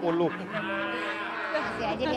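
A long, moo-like call held at one steady pitch for about a second, just after a brief bit of speech.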